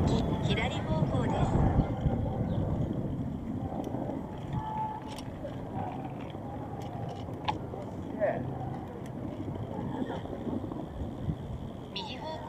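Street ambience: passers-by talking, with a low rumble that is loudest at the start and fades over the first few seconds, and a few scattered small clicks.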